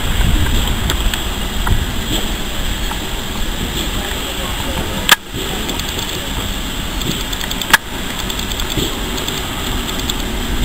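Steam locomotive approaching slowly along the station platform, a steady low rumble. Two sharp clicks, about five and seven and a half seconds in.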